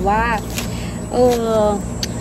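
A woman speaking Thai, mostly a drawn-out hesitation sound ('er'), over a steady low background rumble.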